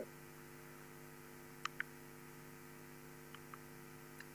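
Faint steady electrical mains hum, with two faint clicks about one and a half seconds in.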